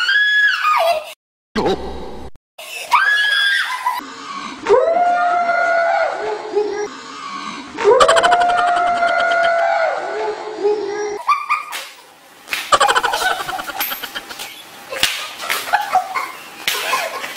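A young woman screaming in fright as she feels an unknown object inside a mystery box: about four long, high, held screams, with two short cut-outs in the first few seconds. Shorter, broken cries and noises come in the last few seconds.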